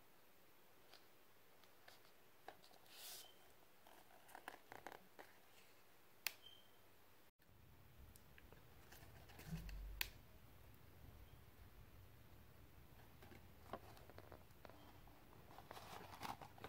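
Faint handling sounds of a plastic DVD case being worked out of a tight cardboard slipcase: scattered small clicks, taps and rustles over near silence.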